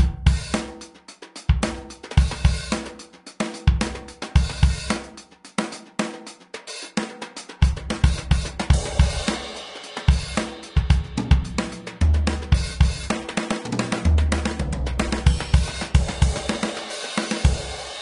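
Sampled drum kit in the MDrummer drum plugin played live from electronic drum pads: kick, snare, hi-hat and cymbals in a continuous groove with fills. The pads' velocity response has been calibrated through the plugin's input MIDI filters, so the drums now sound evenly balanced and "much much better".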